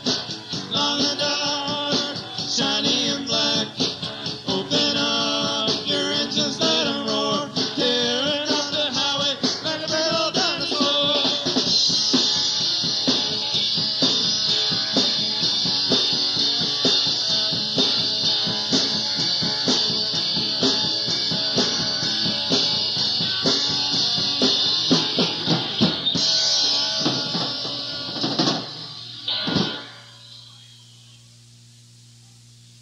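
Live band of electric guitar, bass and drums playing a rock song: a melodic guitar passage gives way to a long held chord with ringing cymbals, and the song stops on a final hit near the end.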